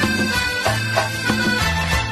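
Instrumental interlude of a karaoke backing track for a Hindi song: sustained bass notes under a melody, with regular percussion strikes about three a second.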